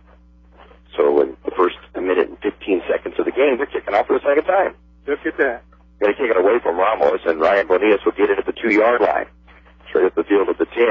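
Radio commentators talking in a narrow, telephone-like broadcast sound, with short pauses, over a steady low hum.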